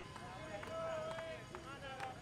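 Men's voices shouting a chant, with one long held call about a second in, over a regular beat of sharp knocks.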